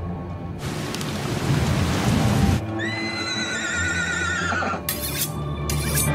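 Film-trailer music under a rushing noise swell that builds and cuts off abruptly about two and a half seconds in, followed by a high, wavering animal cry lasting about two seconds.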